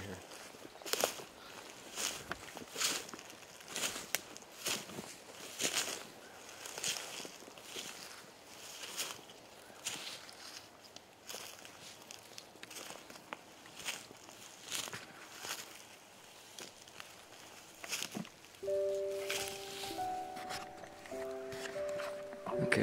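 Footsteps walking through dry grass and forest litter, about one step a second. Near the end, background music with long held notes comes in under the steps.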